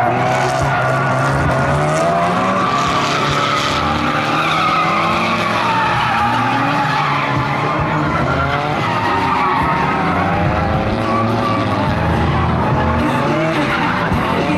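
Several drift cars sliding at once: engines revving and tyres squealing without a break, the squeal wavering up and down in pitch.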